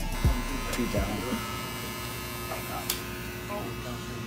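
Electric hair clippers running with a steady buzz while haircuts are being given, with a brief sharp click about three seconds in.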